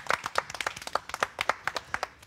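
A small group of people clapping their hands: quick, uneven claps that thin out near the end.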